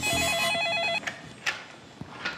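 Office desk telephone ringing: one short electronic trill, a tone rapidly warbling between two pitches, lasting about a second, followed by a couple of short clicks.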